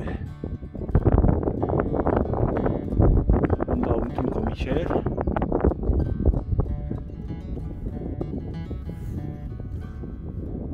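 Acoustic guitar background music, with wind buffeting the microphone in irregular gusts, strongest in the first half.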